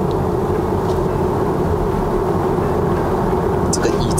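Steady road and tyre noise inside the cabin of a Tesla Model 3 rear-wheel-drive electric car cruising on a highway, with a steady low hum underneath and no engine sound.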